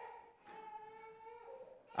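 A baby's faint, drawn-out whine, about a second and a half long, holding one pitch and stepping slightly higher near its end.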